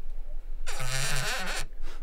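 Foley creaker ('Knarzer'): a wooden slat dragged through a clamp of two wooden bars on a resonance board, giving one long wavering wooden creak of about a second, starting just after half a second in. The sound imitates a small old kitchen cabinet creaking.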